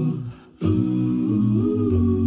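Wordless hummed vocal intro music, a cappella, sustained notes over a steady low hum. It breaks off briefly about half a second in, then resumes.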